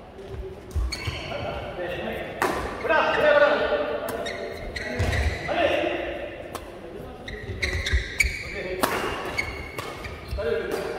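Badminton rackets striking a shuttlecock during a doubles rally: a handful of sharp strikes a second or two apart, with voices, all echoing in a large hall.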